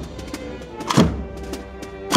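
Processional band playing a slow march: sustained brass chords over a heavy bass drum beat about every second and a quarter, with one drum stroke about a second in.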